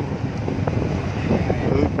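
Steady low rumble of a car's engine and tyres heard from inside the cabin while driving, with a couple of faint clicks.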